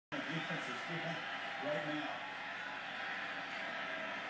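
Steady stadium crowd noise from a college football game, heard through a TV broadcast, with a play-by-play commentator's voice over it in the first couple of seconds.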